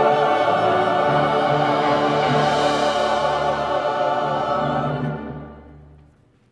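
Church choir singing a sustained chord with instrumental accompaniment, the voices wavering with vibrato; the sound fades out over the last second as the piece ends, with a reverberant tail.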